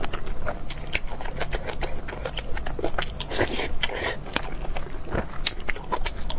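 Close-miked eating sounds of a person chewing spoonfuls of food, with many sharp wet mouth clicks and a denser stretch of chewing about three seconds in.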